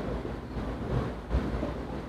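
Marker writing on a whiteboard, a light scratching, over a steady low room hum.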